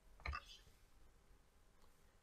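Near silence, with one brief click about a third of a second in.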